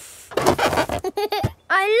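A cartoon sound effect of a long breath blown into a toy balloon to inflate it, followed by a few short pitched sounds. A child's voice begins near the end.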